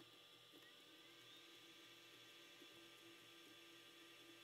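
Near silence: a faint, steady electrical hum of room tone.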